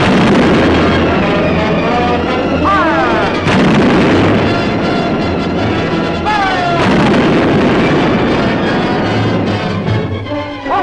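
Cannon fire in a battle: three heavy booms, at the start, about three and a half seconds in and near seven seconds, over an orchestral film score. A short falling tone comes just before the second and third booms.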